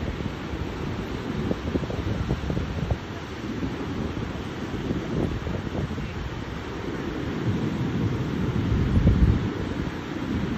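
Wind buffeting the microphone over the wash of ocean surf breaking on the shore, swelling to a stronger gust near the end.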